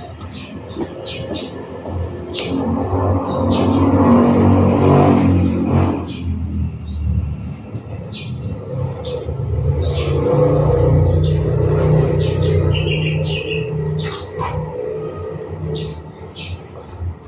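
Low engine rumble of passing traffic, swelling twice, with short high bird chirps scattered over it.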